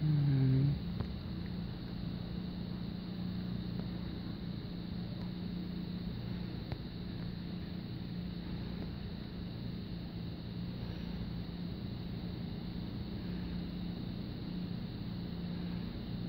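A steady low engine hum with a constant pitch, over a faint even hiss. A brief voice sound comes right at the start.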